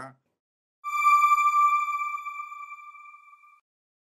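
A single electronic chime tone that starts sharply about a second in and fades out over nearly three seconds: the sting of a TV channel's end card.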